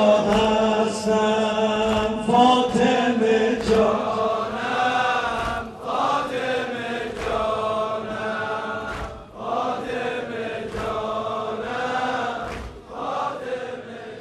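A man's voice chanting a mourning lament through a microphone and PA, holding long, wavering notes, with a congregation's voices joining in. Sharp thumps come about every 0.7 s in time with the chant, the mourners beating their chests. The sound fades near the end.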